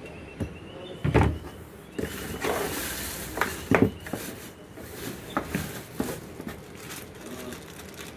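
Handling noises from unpacking a cardboard box: a heavy thump about a second in, then rustling of cardboard and plastic wrapping and a few sharp knocks as a coiled cable is lifted out.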